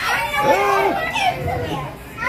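Children's voices calling out and chattering during play, one voice holding a drawn-out vowel about half a second in.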